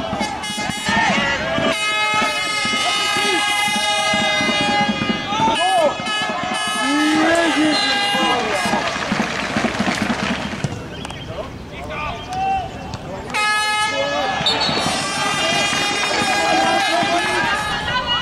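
A horn blowing two long, steady blasts, one from about two seconds in to about six and another starting near fourteen seconds, over men's shouting voices.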